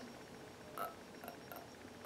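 Quiet room tone, with one faint short sound a little under a second in and a few soft ticks.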